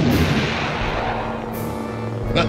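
Cartoon explosion sound effect, its noisy rumble fading away over the first second and a half, with background music underneath.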